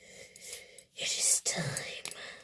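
A person's breathy, whispered vocal sounds in two stretches, the second and louder one about a second in, with a couple of faint clicks.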